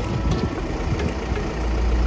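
Vehicle engine idling steadily, its low drone growing louder about one and a half seconds in.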